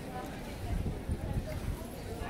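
Footsteps on cobblestones, a few uneven steps, under the chatter of voices of people around.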